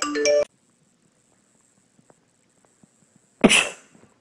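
A bright, marimba-like ringtone tune cuts off about half a second in. After near silence with a few faint ticks, a single short, sharp burst of breath from a person sounds near the end.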